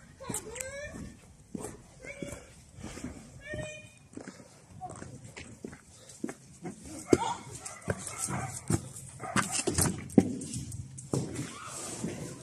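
A dog giving short, rising yelps and whines in the first few seconds. Then comes a run of footsteps and knocks on concrete, loudest about seven to ten seconds in.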